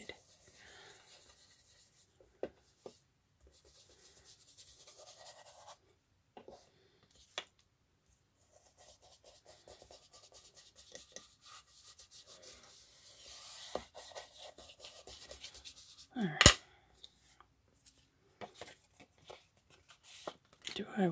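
Ink blending tool rubbed in short strokes along the edges of file-folder card, a soft scuffing that comes and goes, with a single sharp knock late on.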